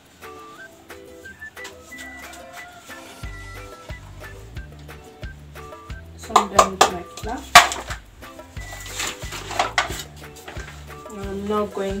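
Background music with a melody and a steady bass beat. Between about six and ten seconds in, several sharp knocks and clatters of kitchen containers, the loudest a little past the middle.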